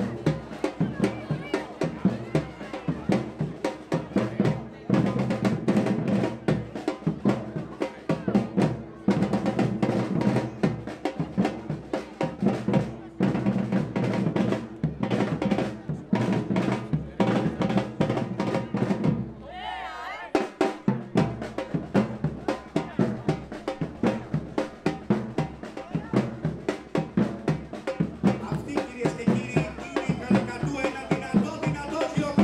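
Street percussion band of parade drummers playing a fast, driving rhythm on snare and bass drums. The drumming breaks off briefly about two-thirds of the way in, then starts again.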